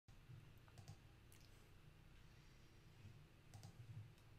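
Near silence: faint room tone with a few soft, short clicks, a couple around a second in and a small cluster near the end.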